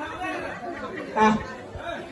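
Voices chattering in a large room, with one voice briefly louder just after a second in.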